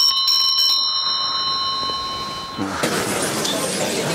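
A bell rung rapidly for about the first second, then ringing out and fading, signalling an interval being announced. About two and a half seconds in, a murmur of voices starts.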